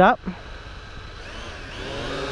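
Syma X8HG quadcopter's brushed motors spinning up on the ground before liftoff: a whine that comes in about a second in, wavering in pitch and slowly growing louder.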